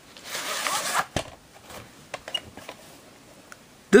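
A VHS tape being handled and taken out of its case: a sliding rustle for most of the first second, then a sharp plastic click and a few lighter clicks.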